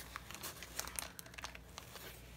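Paper packing insulation in a shipping box crinkling and rustling as it is handled, in quick, irregular, fairly quiet crackles.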